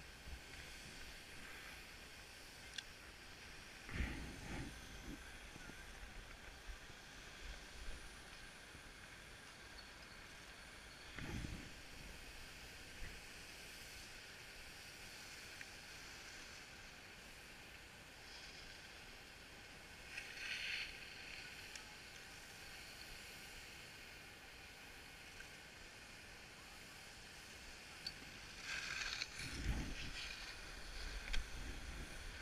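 Faint steady hiss of skis sliding on snow, with short gusts of wind on the microphone about four and eleven seconds in and again near the end.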